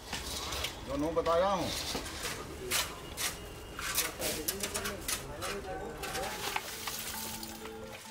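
An iron rod scraping and clinking through ash and coals in a brick furnace, with a series of short sharp knocks, over faint background music and a brief voice-like call about a second in.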